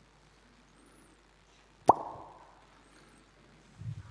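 Quiet room tone broken about two seconds in by a single sharp, loud click with a brief ringing tail, followed near the end by a few faint, dull low knocks.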